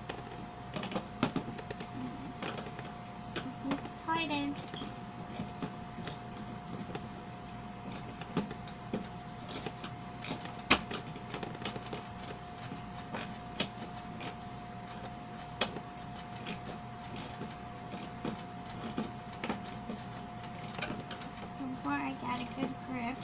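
Irregular clicks and clinks of a hand wrench and screwdriver working the bolts of a wagon during assembly, over a steady hum.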